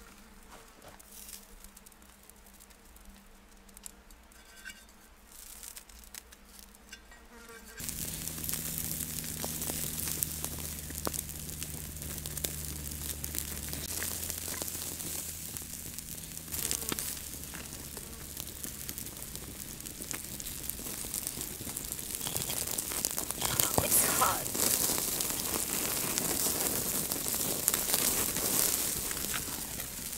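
Wood campfire crackling and sizzling under quail roasting on a skewer over the flames. It starts abruptly about eight seconds in after a quiet stretch, as a dense patter of small crackles that grows louder toward the end.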